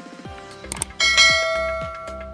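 Sound effect of a subscribe-button animation: two quick mouse clicks, then a bright bell chime about a second in that rings and fades, over background music with a steady beat.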